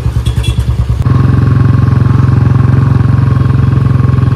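Motorcycle engine ticking over with an even pulse, then about a second in it gets louder and settles into steady running as the bike pulls away.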